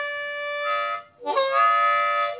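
Custom Suzuki Olive diatonic harmonica with phosphor-bronze-coated reeds, playing two held double-stop chords with a short break about a second in, the second sliding up slightly in pitch as it starts. The chords are played with only a little breath, showing how exactly this harmonica needs its air measured to get an effect.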